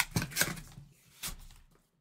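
A few short knocks and rustles of cardboard boxes being handled, loudest in the first half-second, then fading.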